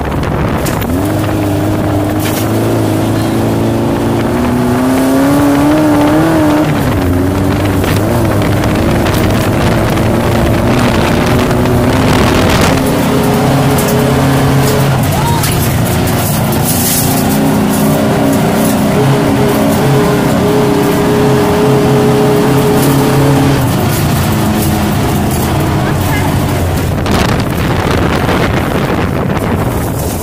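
Air-cooled VW flat-four engine of a lifted Baja Bug running under load while it drives off-road over dirt and gravel. Its pitch rises and falls with the throttle, climbing steadily over the first few seconds and easing off near the end.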